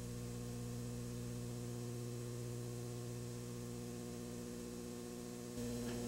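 Steady low electrical mains hum on the audio line, with no other sound.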